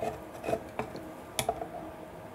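The Kelly motor controller's metal case rubbing and scraping as it is forced into a tight slot in the e-scooter chassis, with a few small knocks, the sharpest about a second and a half in.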